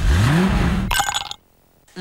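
A wooden door being opened: a low creak that rises in pitch over about half a second and then holds. It ends in a short higher-pitched sound about a second in and then cuts off suddenly.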